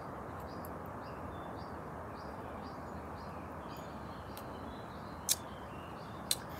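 Faint birds chirping over a steady low background noise, with a sharp click about five seconds in.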